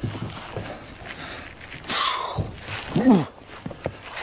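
A man's effort noises as he climbs up onto a pickup's bumper and onto the jammed log in its bed: a breathy huff about halfway through and a short voiced grunt near the end, over low knocks.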